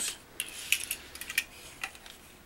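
Small plastic clicks and knocks from a toy car playset being handled, its track pieces and the Shredder figure's arm tapping and rattling as they are set back up. There are a handful of separate sharp ticks, the loudest a little under a second in.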